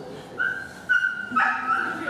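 A dog whining in high-pitched, drawn-out notes. Each note runs into the next, and the pitch steps slightly lower just after halfway.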